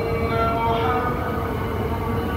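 A muezzin's voice singing the Dhuhr (noon) call to prayer, holding one long drawn-out note of the "Ashhadu…" phrase of the testimony of faith.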